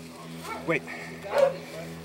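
A hog-hunting dog giving a couple of short, faint barks, with a man's brief word among them.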